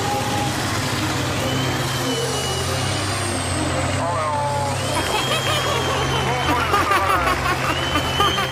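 Tatra 815 6x6 trial truck's diesel engine running steadily under load as the truck churns through deep mud and water, with people's voices over it in the second half.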